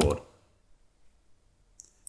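A few faint, brief computer clicks, spaced out over about a second and a half against near quiet.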